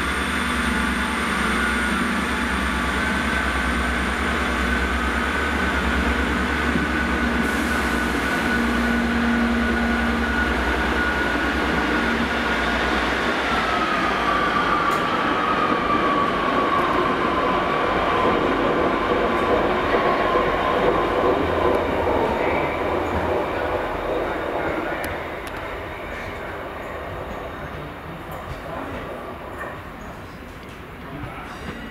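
First Great Western diesel multiple unit pulling out under power, its underfloor diesel engines running with a steady whine that drops in pitch about fourteen seconds in. The sound fades as the train draws away near the end.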